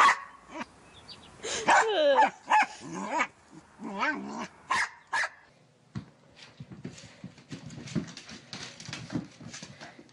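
Corgi puppy barking and yipping in a string of short, loud calls for about the first five seconds. After that come quieter scattered knocks and patters.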